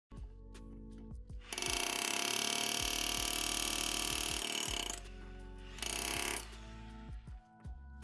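Cordless hammer drill hammering on a stuck lawn mower blade bolt in two bursts, a long one of about three seconds and a short one near the end, without breaking it loose. Background music plays under it.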